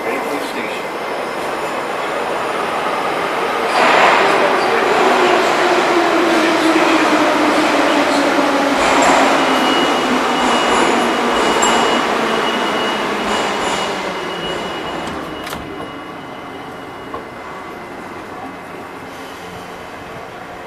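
St. Petersburg metro train, including an 81-723.1 car, pulling out of the station. Its rolling rumble builds over a few seconds, with a whine falling in pitch. It then fades as the train moves away, with a thin high steady tone heard midway.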